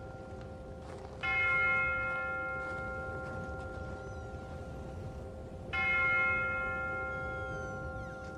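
Two deep bell strikes about four and a half seconds apart, each ringing on and slowly fading over a steady held tone: the opening of a background music track.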